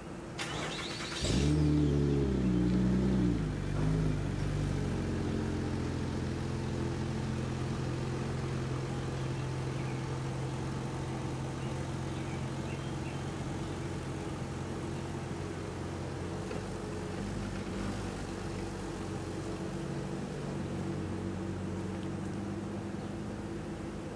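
Ford Fusion sedan starting: a short burst from the starter, the engine catches about a second in with a brief rev, then settles into a steady low-speed run as the car backs out and pulls away.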